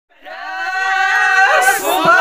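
A long, high-pitched vocal cry from more than one voice, held on a steady pitch and wavering near the end.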